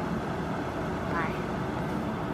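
Steady background noise, with one short vocal sound rising in pitch about a second in.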